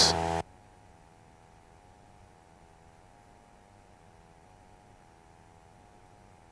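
Cockpit speech over the light aircraft's steady engine drone, cut off abruptly about half a second in; after that almost nothing is heard but a faint steady hum.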